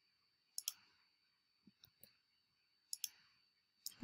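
Faint clicks of a computer mouse: a quick double click about half a second in, a few fainter ticks near two seconds, another double click about three seconds in, and a single click near the end.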